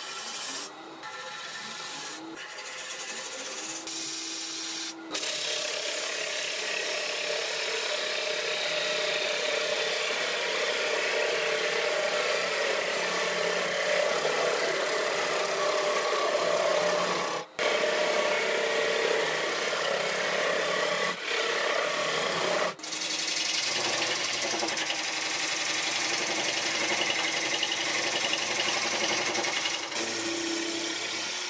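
Turning tool cutting into the face of a poplar blank spinning on a wood lathe: a steady rasping hiss of wood being shaved. It comes in short broken cuts for the first few seconds, then runs as one long cut that stops briefly twice in the later part as the tool lifts off.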